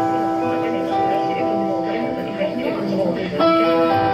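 A live band playing the intro of a song: sustained keyboard chords that change about once a second, loud and steady, with no drums yet.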